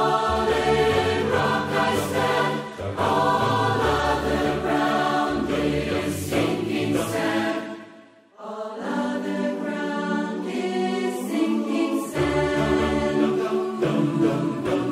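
Large mixed choir of hundreds of separately recorded voices singing long, sustained chords in slow phrases, with a brief break for breath between phrases about eight seconds in.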